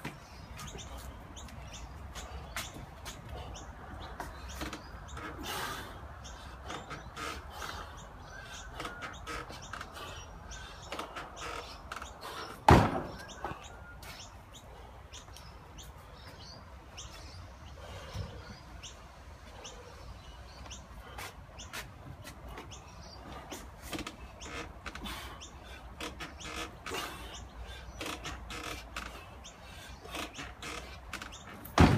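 Outdoor background with faint bird chirps and scattered small clicks and knocks. A single sharp thump about thirteen seconds in.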